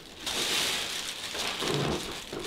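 A steady rustling, crackling noise starts just after the beginning and holds through, with a brief low voice near the end.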